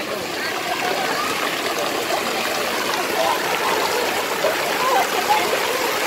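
Pool fountain jet spraying water steadily, the spray falling back onto the pool surface. Voices of bathers can be heard in the background.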